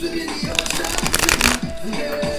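A deck of tarot cards being shuffled by hand: a rapid, dense flurry of card riffling lasting about a second, starting about half a second in, over music.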